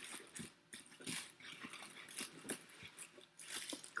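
Cellophane crinkling and a floral foam brick scraping against the sides of a cardboard box as it is pushed down into place, in short irregular rustles and scrapes.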